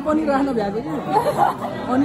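Only speech: people chatting at a table in Nepali.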